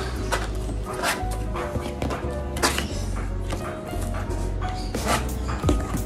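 Background music playing throughout, with a few sharp hits over it.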